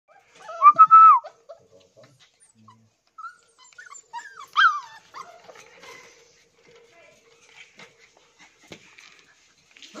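Labrador puppies whining in short high-pitched cries: the loudest cluster comes in the first second, and another falling cry comes about four and a half seconds in. Faint clicks and rustles fill the gaps.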